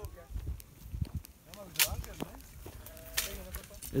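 Sheep bleating under a carob tree, with a couple of sharp knocks about two seconds in from a long stick beating carob pods out of the branches.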